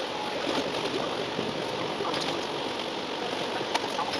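Cabin noise of a moving Alexander Dennis Enviro400 double-decker bus, heard from the upper deck and sped up fourfold, so the engine and road noise blur into a steady rushing hiss. A few sharp clicks stand out, the loudest near the end.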